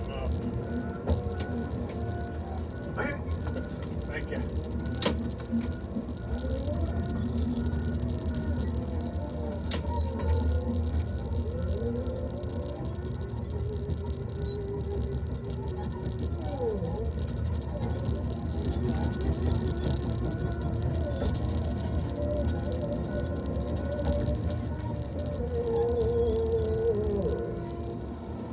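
Tigercat LX870D feller buncher heard from inside its cab as it works: the diesel engine runs steadily under hydraulic whines that rise and fall as the machine moves. A high alarm beeps in an even rhythm.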